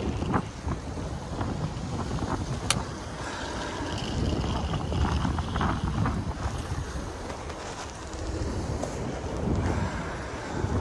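Wind buffeting the microphone while riding a Segway Ninebot ES4 electric scooter through traffic, an uneven low rumble. A single sharp click comes about two and a half seconds in.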